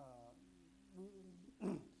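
A man's hesitant filler sounds ("uh") and then a single short cough about three-quarters of the way through, which is the loudest sound. A steady low electrical hum runs underneath.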